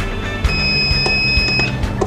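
Digital timer of a combo heat press controller sounding its end-of-cycle alarm: one long, steady, high-pitched beep of a little over a second, signalling that the timed heating of the tumbler is done. Background music plays underneath.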